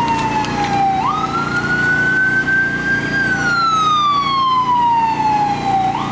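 Emergency vehicle siren wailing in slow sweeps: the pitch jumps back up about a second in, climbs a little, then falls slowly toward the end. A steady low hum lies underneath.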